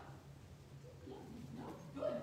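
A quiet pause in the talk: a low, steady room hum, with a faint, short voice sound in the second half.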